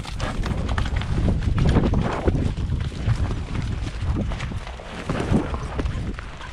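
Horses' hooves stepping on a muddy dirt trail, a loud, irregular run of low thuds.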